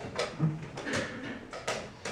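Wooden chess pieces being set down on the board and the chess clock's buttons pressed in a fast blitz game: a quick, uneven run of sharp clicks and knocks.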